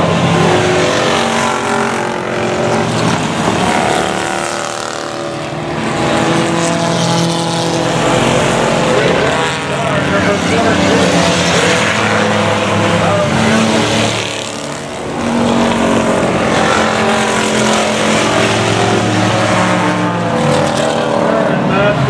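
Several stock-bodied enduro race cars running around a short oval track, their engines overlapping and rising and falling in pitch as they accelerate, lift off and pass. The sound eases off briefly twice, about five and fifteen seconds in.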